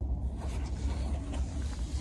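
Low, steady rumble of wind buffeting the phone's microphone in the forest.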